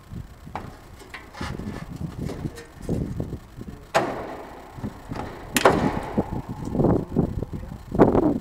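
Pliers knocking and scraping on the metal casing and shaft end of an air-conditioner fan motor, an irregular run of clanks with two sharp ringing metallic knocks about four and five and a half seconds in.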